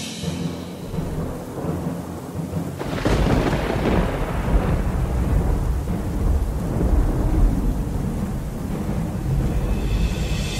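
Thunderstorm sound effect: rain and a rolling rumble of thunder that swells about three seconds in, over a low music drone.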